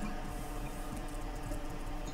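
A steady low hum with faint background noise, no distinct event.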